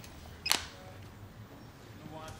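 A single sharp click about half a second in: a flip phone snapped shut to end a call, over a faint low hum of room tone.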